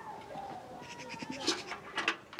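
Livestock bleating faintly in the background, then a few sharp clanks near the end as a metal bucket is set down.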